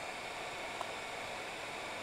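Heat gun blowing hot air in a steady hiss as it shrinks heat-shrink wrap onto a LiPo battery pack.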